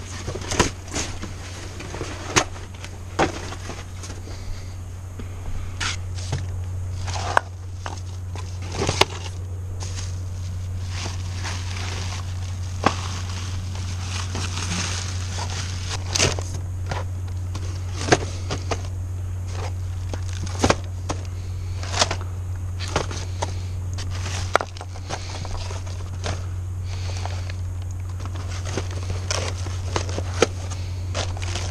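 Cardboard boxes and packaging being rummaged through and handled: rustling and scraping, with many sharp clicks and knocks as items are picked up and set down. A steady low hum runs underneath, louder from about a quarter of the way in until near the end.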